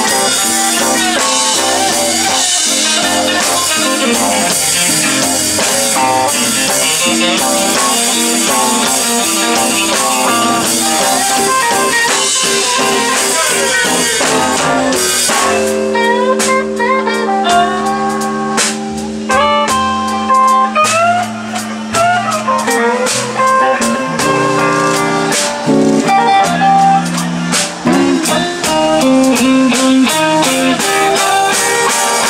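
Live electric blues band playing an instrumental passage on electric guitars, bass and drums. About halfway through, the cymbals drop out and the playing thins to long held guitar notes and bent notes over sparse, accented band hits.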